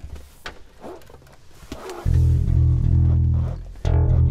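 Electric bass guitar plugged straight into the sound card's instrument input, heard clean through input monitoring. After faint handling clicks, a long sustained low note is plucked about two seconds in, and a second note just before the end.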